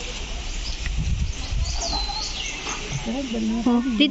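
Outdoor forest ambience: a steady high hiss of insects with a low rumble underneath, and a single bird whistle that dips and rises about halfway through. Near the end a person's voice starts.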